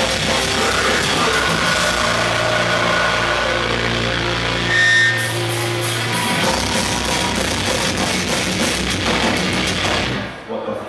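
Live metal band playing: distorted electric guitars, bass and drum kit. The lowest bass drops out briefly about halfway, then the full band comes back in.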